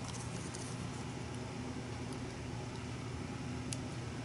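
A steady low hiss of background noise, with a few faint light ticks as a small paper sticker is picked at and peeled by hand.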